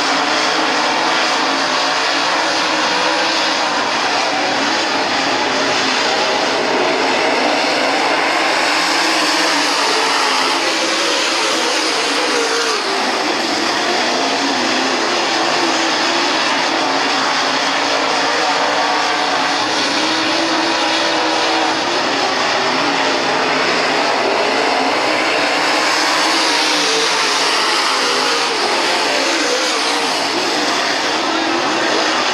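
Several dirt late model race cars' V8 engines running at racing speed together, a loud continuous sound with engine notes rising and falling as the cars come round the track.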